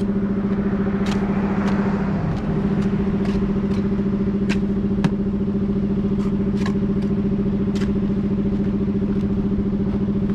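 A small engine runs at a constant speed with a steady hum. Over it come sharp taps, and near the start a rough scraping, as a steel trowel butters mortar heads onto the ends of concrete blocks.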